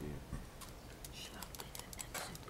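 Faint, irregular light clicks and taps, with a voice trailing off at the very start.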